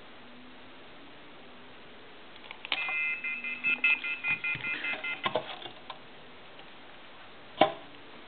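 Push-button telephone keypad dialing out: a quick run of touch-tone beeps with key clicks for about two and a half seconds, testing the repaired 1-2-3 row of keys. A single sharp click near the end.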